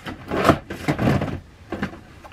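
Packaging being handled, with a few short rubbing, scraping bursts, the loudest about half a second and one second in.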